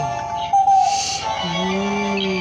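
Gemmy animated plush toy's built-in sound chip playing its electronic tune, with long held low notes under a higher melody, and a short hiss about half a second in.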